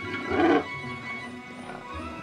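Background cartoon score with one short, loud animal cry about half a second in: a cartoon animal sound effect.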